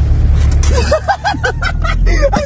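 A car's engine running with a steady low rumble heard inside the cabin, and from about half a second in a rapid string of high squeals rising and falling in pitch, about five or six a second.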